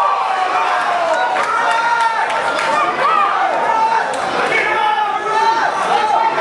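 Fight crowd shouting and calling out over one another, many voices overlapping, echoing in a large hall, with a few brief knocks among them.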